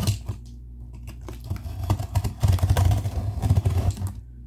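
A cardboard parcel box being worked open: quick scratching and clicking at the tape. In the second half there is louder rubbing and knocking close to the microphone, where a cat is pressing against the camera.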